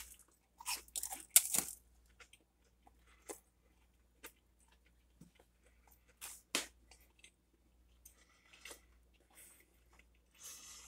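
A person biting into a toasted grilled cheese sandwich and chewing it: a few crisp crunches in the first two seconds, then scattered faint chewing sounds, with one sharper tap about six and a half seconds in.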